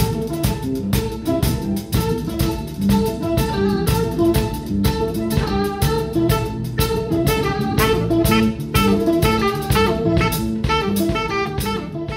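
Jazz-fusion band playing: a quick run of electric guitar notes over a drum kit.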